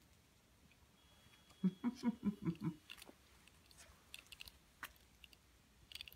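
A short, soft run of laugh-like voiced pulses about a second and a half in. Then faint scattered clicks and crunches: a cat biting and chewing at a lizard.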